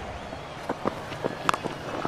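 A few light footfalls of a bowler running in, then a single sharp crack of a cricket bat striking the ball about one and a half seconds in: a cleanly struck, big hit.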